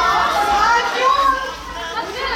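A crowd of fans squealing and shouting, with many high voices overlapping.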